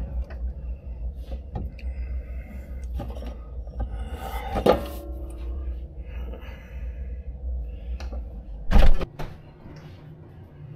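Refrigerator interior with the door open: a steady low hum, a clink about halfway through as a drink can is lifted off the glass shelf, and a loud thump near the end as the fridge door is shut, cutting the hum off.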